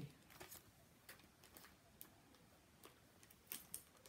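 Faint crinkles and light clicks of clear plastic sticker packets being handled and shuffled, a scattering of small ticks with a few louder ones near the end.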